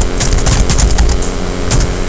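Typing on a computer keyboard: a quick run of keystroke clicks, ending with the command being entered, over a steady low background rumble.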